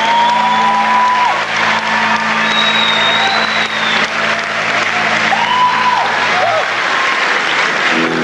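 Concert audience applauding and cheering, with several short whistles, over a low steady drone from the stage that stops about two-thirds of the way through.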